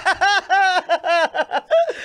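A man laughing loudly in a quick run of short ha-ha pulses, about four or five a second.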